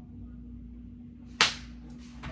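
A single sharp slap, like a hand smacking against the body, about a second and a half in, over a faint steady hum.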